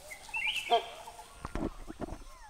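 Wild birds calling: a few short whistled and chattering calls, one rising in pitch early on.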